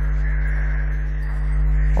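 A steady low electrical hum with several evenly spaced overtones, dipping slightly in loudness just past the middle.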